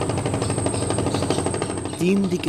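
Engine of a wooden river boat running steadily, with a rapid, even knocking beat over a low hum.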